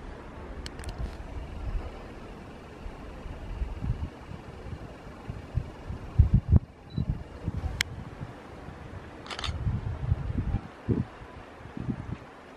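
Camera handling noise as the shot is zoomed in: uneven low rumbling thumps of wind and handling on the microphone, with a few sharp clicks.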